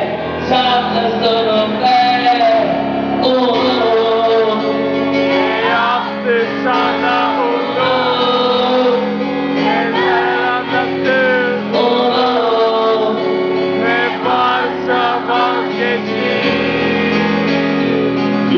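Live concert music: a man singing a wavering, drawn-out melody over steady instrumental accompaniment.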